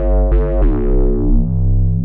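Native Instruments TRK-01 Bass synth playing its 'Drive By' preset: a deep synth bass with a few quick notes in the first second, then a held low note whose bright upper tones fade away.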